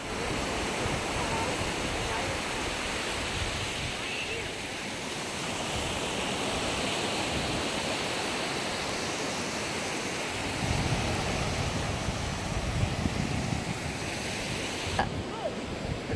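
Steady rushing noise of ocean surf and wind, with wind buffeting the microphone from about ten seconds in.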